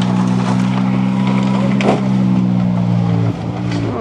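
Minivan engine held at steady, constant high revs under full throttle, with a single thump about two seconds in. Its note drops away shortly before the end as the throttle is released.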